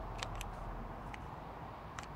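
Faint light clicks of small wooden puzzle pieces being handled and pushed, about four over two seconds, against a steady low outdoor background.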